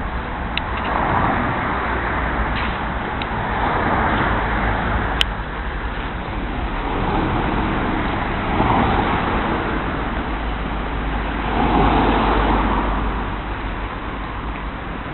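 Road traffic: four vehicles passing one after another, each swelling and fading over a couple of seconds, the last the loudest.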